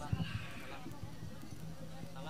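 A few soft, low knocks in the first half second over quiet stage background with faint voices, and a faint steady hum through the sound system.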